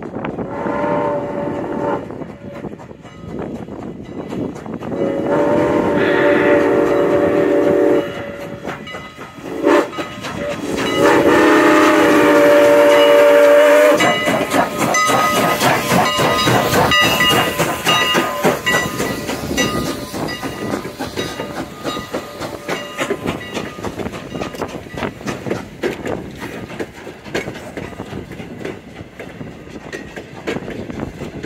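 Steam locomotive CN 89's chime whistle blowing the grade-crossing signal, long, long, short, long, as the train approaches a crossing. From about the middle on, the locomotive and its coaches roll past close by with a steady clatter of wheels over the rail joints.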